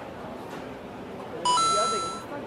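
A two-note electronic chime about a second and a half in: a short lower note steps up to a higher held note, over a low murmur of voices.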